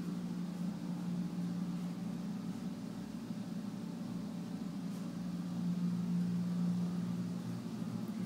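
A steady low mechanical hum with a faint hiss over it, unchanging throughout.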